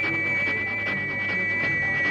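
Instrumental passage of a 1961 Tamil film song: two high notes held steady over a regular percussive beat of about four strokes a second, with no singing.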